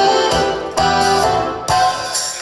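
Ballroom dance music playing, with sustained chords and new chords coming in about a second in and again near the end.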